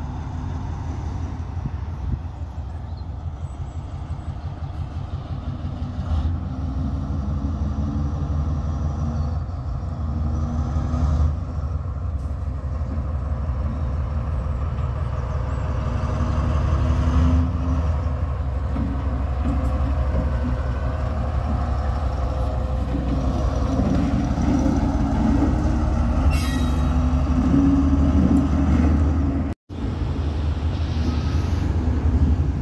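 Colas Rail Freight Class 70 diesel locomotive's engine running as it moves slowly through the yard, a steady low drone that grows louder as it draws nearer, strongest in the last several seconds.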